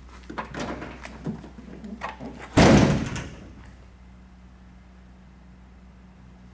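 Tailgate of a 2014 Ram 1500 pickup being unlatched and let down: a few small clicks and rattles from the handle and latch, then one loud clunk about two and a half seconds in as it drops open.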